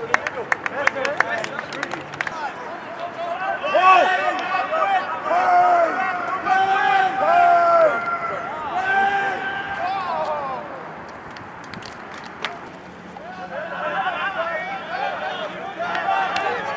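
Several people shouting and calling out at once across an open field, raised voices overlapping in bursts, with a quick run of sharp clicks in the first two seconds. The voices fade for a couple of seconds near the middle and pick up again toward the end.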